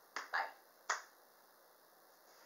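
A single sharp click about a second in, just after a spoken 'bye', ringing away quickly.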